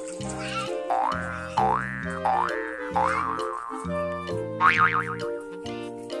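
Playful children's background music with a repeating bouncy bass and chord pattern, overlaid with springy cartoon sound effects: rising pitch sweeps about four times in the first half, then a quick wobbling run of short sweeps near the end.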